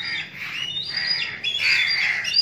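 Black kites calling: a run of short, high, thin whistling notes, some level and some sliding in pitch, several overlapping.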